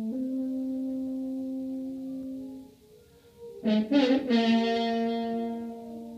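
Unaccompanied French horn playing slowly: a long held note that fades away, a short pause, then two loud accented attacks about four seconds in, leading into another long note that slowly fades.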